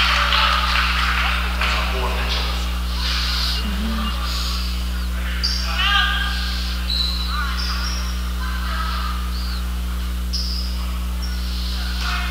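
Gymnasium sound during a basketball game: a steady electrical hum under the murmur of crowd voices, with short high squeaks of sneakers on the hardwood court several times in the second half.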